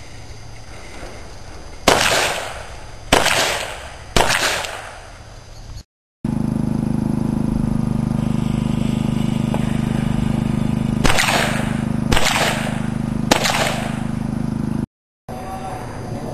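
Pistol fired three times about a second apart, each shot sharp with a short ringing tail, then after a break three more shots at the same pace over a steady low hum.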